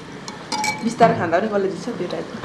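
Spoons and tableware clinking lightly against stainless-steel bowls as puris are dipped into pani. A person's voice sounds briefly about a second in.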